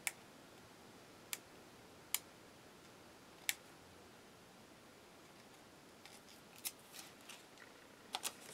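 Faint, sharp clicks as the backing paper is picked and peeled off small cut-out paper stickers, four single ticks spaced a second or so apart, then soft paper rustling near the end as the stickers are handled.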